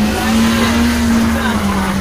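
Kia sedan's engine revving hard and held at high revs while the car is stuck, its wheels spinning in mud. The engine note climbs a little in the first second, then slowly sags.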